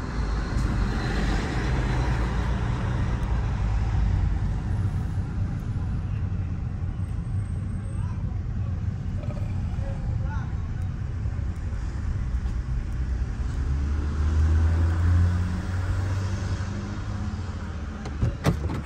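Road and engine rumble inside the cabin of a moving Honda car, a steady low drone that swells louder about fourteen seconds in.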